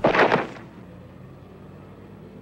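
A short, loud impact of a body hitting the grass, a film sound effect lasting about half a second, followed by a low steady background hum.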